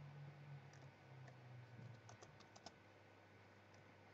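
Faint clicks of a computer mouse and keyboard: a few single clicks and a quick run of about five a little past the middle.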